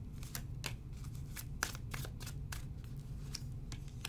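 A deck of oracle cards shuffled by hand: a quick, uneven run of light card clicks and flicks. The cards are then set down onto the table spread.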